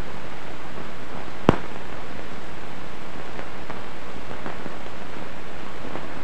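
Steady hiss of an old film soundtrack, with one sharp pop about one and a half seconds in and a few faint ticks later on.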